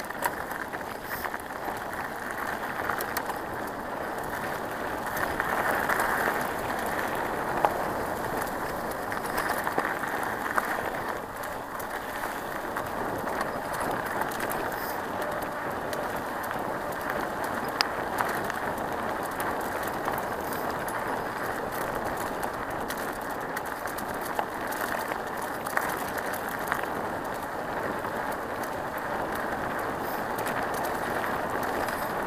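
Tyres rolling over a gravel and dirt track: a steady crunching hiss with scattered clicks and knocks from the ride over the stones.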